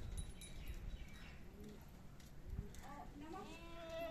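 A goat bleats once near the end, a long call with a slight arch in pitch. There are low bumps of handling noise near the start and in the middle.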